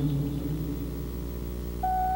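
Soft instrumental accompaniment: held low notes die away, and a single flute note enters near the end, starting a melody that climbs.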